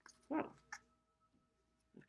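A single short spoken "whoa", then a faint click; otherwise quiet apart from a faint steady hum.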